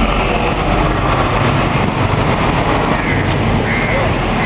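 Road traffic: a bus and cars passing, with a steady, loud low engine rumble.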